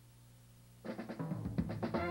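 Faint low hum, then about a second in a jazz drum kit comes in with a run of rapid strikes, opening a fast swing big-band number.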